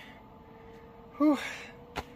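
A man's tired "whew" exhale about a second in, over the faint steady hum of a Zero Breeze portable air conditioner running. A short click near the end.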